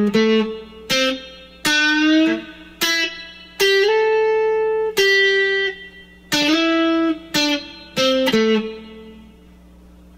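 Electric guitar playing a single-note lead phrase: about a dozen picked notes with slides and a bend, each note ringing on. The last note fades out near the end.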